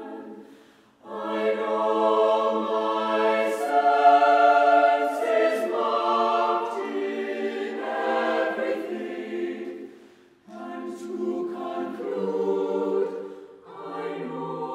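Mixed-voice choir of men and women singing sustained chords in several phrases, with short breaks between phrases about a second in and again near ten seconds. The sound swells loudest a few seconds in, and the sung text's 's' sounds come through as brief hisses.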